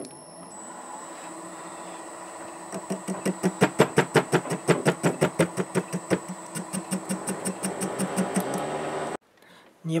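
MN-80 lathe running with a steady hum and a high whine while a cutting tool faces the end of a brass blank, the tool ticking rhythmically about five times a second from about three seconds in as it meets the uneven face left by parting. The lathe stops and the sound cuts off suddenly just after nine seconds.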